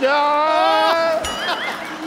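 A man's voice singing a long held, slightly wavering note on the word 'jaa', followed by a few short swooping vocal sounds.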